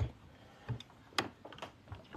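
A few short, sharp clicks, about a second in, as a press drives a Delrin ball down onto a quarter in a steel doming block, folding the coin.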